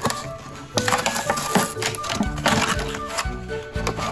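Thin clear plastic blister packaging crackling and clicking as it is pulled open by hand, over steady background music.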